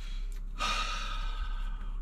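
A man sighs: one long, breathy exhale lasting about a second, starting about half a second in.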